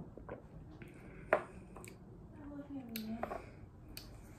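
A woman tasting a sip of red wine: a few small clicks and one sharp tap about a second in, then a short 'mmm' hum that falls in pitch.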